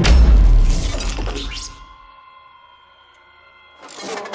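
Cinematic transition sound effect: a sudden deep boom with a shattering crash that dies away over about two seconds into a quieter steady electronic hum, then a second hit begins near the end.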